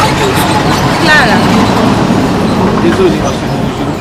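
Brief bits of speech over a loud, steady rushing background noise.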